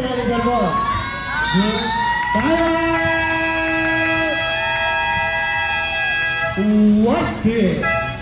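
Spectators shouting and cheering, with several voices holding long drawn-out yells through the middle, and a burst of loud shouting near the end.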